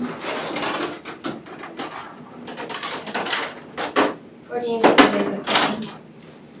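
Low voices talking, with rustles and clicks of medical supplies being handled at a crash cart. One sharp click comes about five seconds in.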